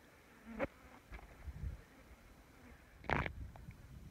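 Bush flies buzzing in short passes, the loudest just after three seconds in, with a faint low rumble between them.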